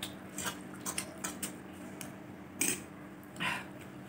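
Metal fork clicking and scraping on a plate while gathering noodles: a string of small clicks, then two louder scrapes near the end, over a faint steady hum.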